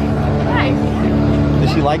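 Voices over a steady low motor-like hum that holds one pitch.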